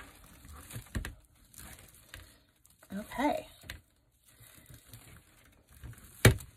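Deco mesh rustling and crinkling as it is pulled through a wire wreath frame and bunched into ruffles by hand, with a light knock about a second in and a brief bit of voice about three seconds in.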